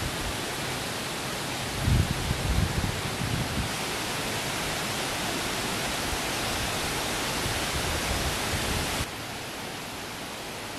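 Steady wind through forest leaves, a continuous hiss, with low gusts buffeting the microphone about two seconds in. The hiss changes abruptly twice, near four seconds and again near nine seconds, where it drops in level.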